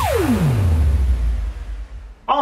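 Electronic background music ending on a steeply falling synth sweep that drops into a low rumble and fades out near the end.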